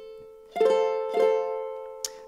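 Tenor ukulele playing an F major chord high on the neck (frets ten, nine, eight and an open string): the last notes fade, then two plucked attacks about half a second apart, each chord ringing out and slowly fading.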